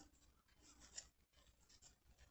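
Near silence, with faint rustling of yarn being wound around a cardboard form and a small tick about a second in.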